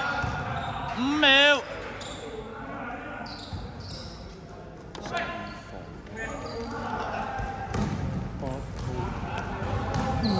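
Basketball game play in a large echoing sports hall: the ball bouncing on the court floor amid players' voices and movement. There is a short, loud, wavering squeal about a second in.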